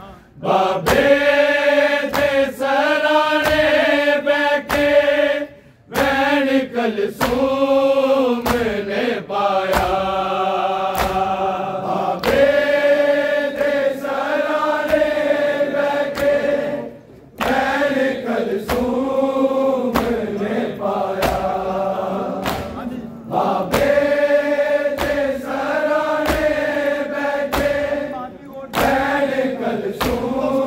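A noha lament chanted by a large group of men's voices in unison, phrase after phrase, over a steady beat of hands striking bare chests in matam. The singing breaks off briefly between lines.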